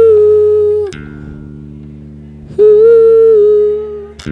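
Live experimental rock on electric bass guitar: low held bass notes that change pitch about a second in, with two long, high held notes over them, one at the start and one near the end.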